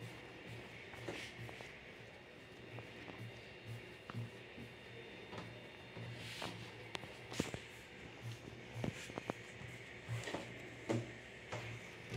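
Quiet handling sounds of bread dough being rolled and pressed by hand on a countertop, with scattered soft knocks and clicks.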